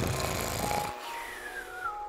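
Cartoon snore from a sleeping man: a low rasping breath in for about a second, then a falling whistle on the breath out.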